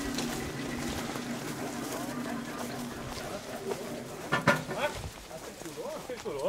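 Tractor-driven flail shredder running at a distance as it chops coffee branches, a steady low hum that fades about halfway through, with voices.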